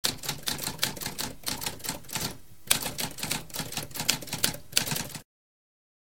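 Typewriter typing: a quick run of sharp key strikes, several a second, with a short pause about halfway through, stopping suddenly a little over five seconds in.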